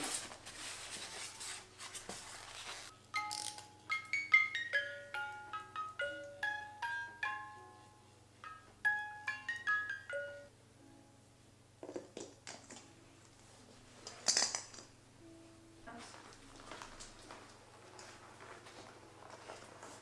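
Snow-globe music box plinking a short melody of clear, high, bell-like notes for several seconds, then stopping; scattered handling clicks and rustles follow.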